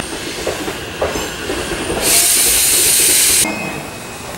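Electric train at a station platform with a loud burst of hissing compressed air about two seconds in, lasting about a second and a half and cutting off suddenly, over steady platform and train noise.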